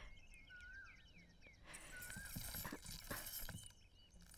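Faint birds chirping in short repeated whistled figures, joined about halfway by a hiss and a few soft knocks.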